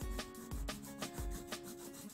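Pastel crayon rubbed across paper in a series of short scratching strokes, under soft background music with held notes.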